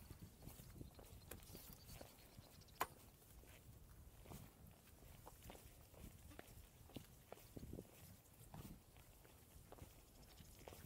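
Near silence broken by faint scattered taps and scuffs of hikers climbing down bare granite on steel handrail cables, with one sharp click about three seconds in.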